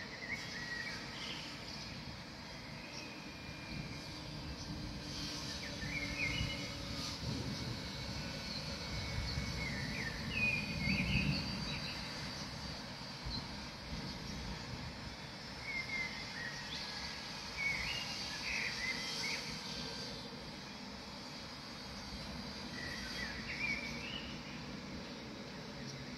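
Outdoor ambience: small birds chirping in short, scattered calls over a low rumble that swells in the middle and fades again.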